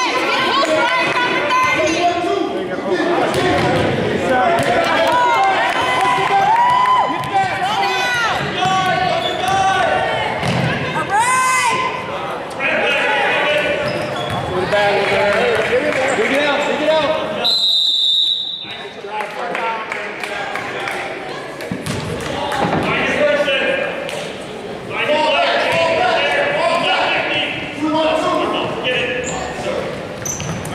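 Basketball bouncing on a hardwood gym floor during play, under steady shouting from players and spectators echoing in the hall. A short, high whistle blast sounds about two-thirds of the way through.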